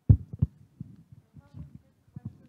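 Handling noise from a handheld microphone: two low thumps about a third of a second apart, then faint scattered bumps.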